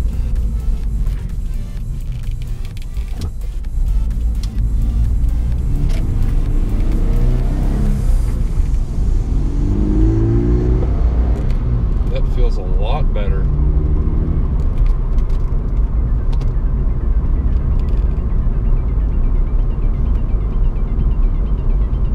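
Inside the cabin of a Scion FR-S / Subaru BRZ / Toyota 86: the FA20 flat-four boxer engine rises in pitch several times as the car accelerates through the gears, over a steady low road drone.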